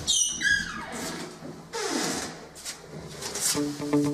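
A high squeak sliding steeply down in pitch at the start, then rustling and scuffing, with plucked guitar music starting near the end.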